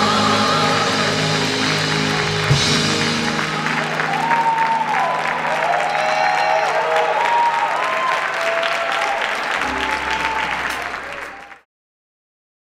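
Gospel choir and band holding a final chord that breaks off with a low thump about two and a half seconds in, followed by an audience applauding and cheering with shouted whoops. The applause fades out just before the end.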